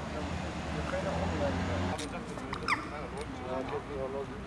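Indistinct voices talking in the background. A low steady hum stops suddenly about two seconds in, and a short high falling squeak with a click comes soon after.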